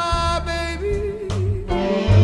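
Slow blues recording playing: a sustained lead line that bends and wavers in pitch over steady bass backing.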